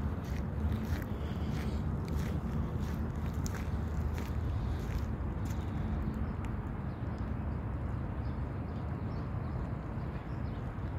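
Wind buffeting a phone's microphone, heard as a steady, rough low rumble, with faint scattered clicks throughout.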